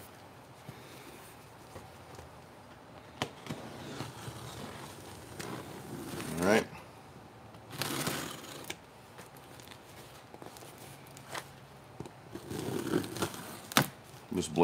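Box cutter slitting the packing tape along a cardboard carton, with scattered scrapes, clicks and cardboard rustling, and a longer rasping cut about eight seconds in.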